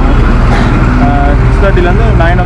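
A loud, steady low rumble with indistinct voices over it.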